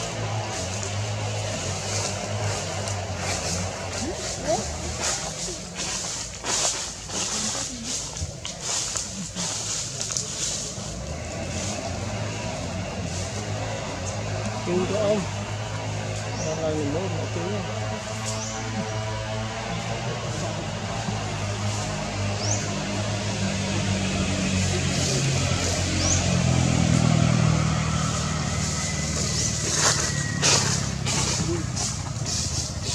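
Outdoor background: a steady low engine hum that grows louder near the end, indistinct voices, and a few short high bird chirps.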